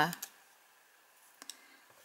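Two faint, sharp clicks close together about a second and a half in: a card sail being pushed into the cut slits of a plastic bottle cap.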